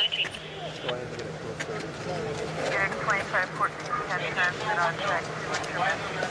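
Indistinct voices talking over a steady low hum of vehicle engines.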